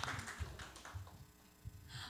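Brief light clapping from a few people, fading out within about a second and a half into quiet room tone.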